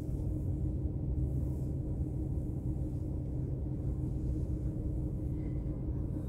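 Steady low rumble and hum inside a parked van, with no distinct events.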